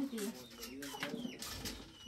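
Faint background voices with a bird calling, in a lull between louder conversation.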